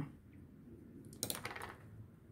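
A plastic modelling tool set down on a cutting mat, a short cluster of clicks and taps about a second in.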